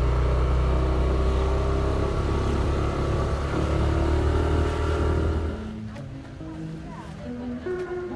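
A vehicle engine running with a steady low hum that drops away about five and a half seconds in, leaving quieter street background with a few faint clicks.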